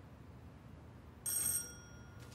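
A doorbell rings once about a second in: a sudden, bright, high ring that holds for about half a second and then fades out.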